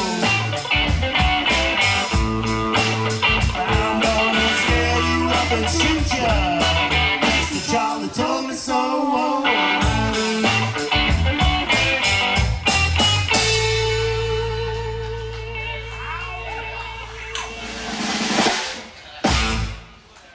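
Live band of electric guitars and drum kit playing the instrumental close of a blues-rock song, the drums hitting on a steady beat. About 13 seconds in the band holds a final chord that rings on and fades, and a couple of loud final hits land near the end.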